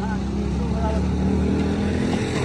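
A steady low motor hum with faint voices in the background.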